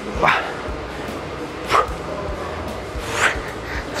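Three short, sharp exhalations by a man, about a second and a half apart, each timed to a biceps curl against a resistance band, over steady background music.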